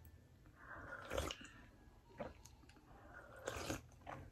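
A person sipping coffee from a mug: faint slurps and swallows, one about a second in and another near the end, with a small click between.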